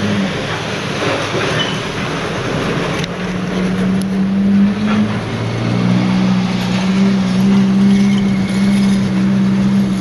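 Industrial scrap-metal shredder and heavy yard machinery working: a loud, dense grinding noise with a couple of sharp metallic knocks, and a steady engine drone that deepens about five seconds in.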